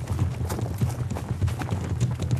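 Hurried running footsteps crunching on dry leaf litter and twigs, a quick irregular patter of steps, over a low steady hum.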